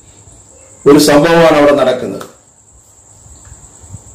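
A man's voice says one short phrase about a second in, against a steady high-pitched chirring of crickets that carries on unbroken underneath.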